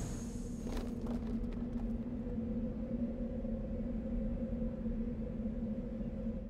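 Steady low synthesized drone of a production-logo sound effect: one held tone with a fainter higher partial over a low rumble.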